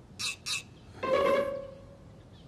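Short comic music cue: two quick high accents, then a single held string note lasting about half a second.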